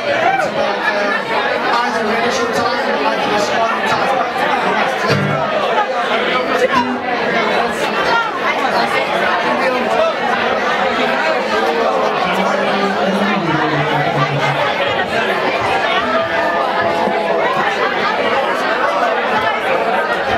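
Crowd chatter in a busy pub, many voices talking over one another, with some music underneath and a few low held notes about two-thirds of the way through.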